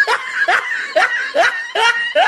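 A person laughing in short repeated bursts, about two a second.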